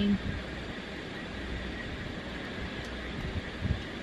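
Steady background hiss with a low hum: room tone in a pause between words, with a soft low knock near the end.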